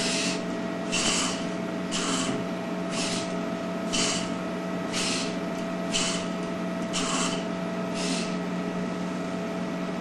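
Hobby RC servos driving a robot's eyelid flaps, run straight from a computer's printer port. They give a short buzzing whir about once a second, nine times, as the flaps change position, over a steady hum.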